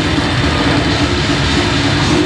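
Death metal band playing live at full volume: distorted electric guitars and a fast, steady drum beat.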